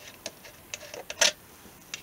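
Small metal hardware clicking as fingers handle a screw at a brass insert in a Strat-style guitar body: a scattering of light, sharp clicks, the loudest a little past halfway.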